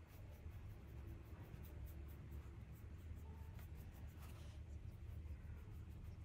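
Paintbrush dabbing and stroking gouache onto paper, a faint run of soft scratchy strokes several times a second, over a low steady room hum.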